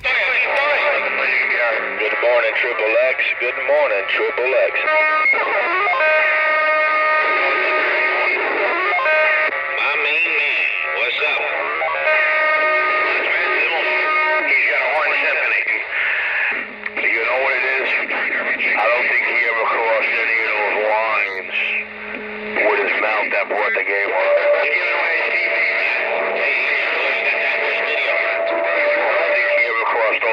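Channel 19 traffic coming through a CB radio's speaker: narrow, radio-band audio mixing distorted, echoing voices with music-like steady tones, with two brief dips in level midway.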